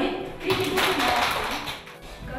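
A dense, irregular run of many sharp taps, lasting a bit over a second and fading out near the end.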